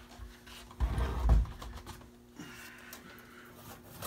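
Rummaging and handling noise: a low, heavy thump-like rumble about a second in, then fainter scraping and shuffling.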